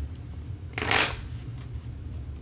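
A tarot deck being shuffled by hand: one short swish of cards about a second in, over a low steady hum.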